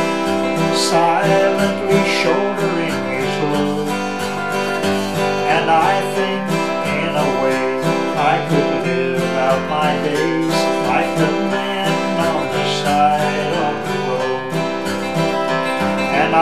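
Steel-string dreadnought acoustic guitar strummed and picked in a steady country rhythm, an instrumental break between sung verses.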